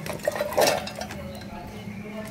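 Chunks of fresh coconut tipped from a steel bowl into a stainless-steel mixer-grinder jar, rattling and clinking against the metal in a few quick clatters.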